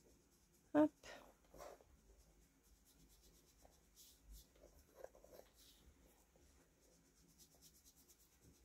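Faint, scratchy rubbing of an inking tool on paper in short, irregular strokes as the edges of a paper label are darkened with ink.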